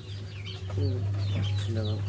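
Chicken clucking in short calls, over a steady low hum.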